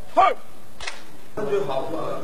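A man's shouted parade command, ending in a short, sharp bark just after a long drawn-out call. A single sharp crack follows a little later.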